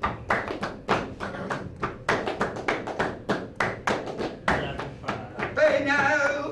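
Rhythmic flamenco hand percussion, sharp strikes about three to four a second keeping the compás. Near the end a man's voice comes in over it.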